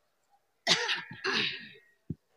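A person clearing their throat harshly in two rough bursts, starting a little under a second in and lasting about a second together.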